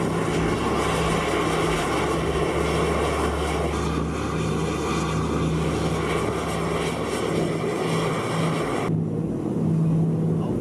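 Ohio-class submarine's main ballast tank vents blowing off air in plumes of spray as it starts to dive: a steady rushing roar over a low, steady hum. The high hiss of the rush drops away suddenly about nine seconds in.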